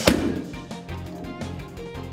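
Background music, with one sharp smack just after the start: a gloved punch landing on a trainer's focus mitt.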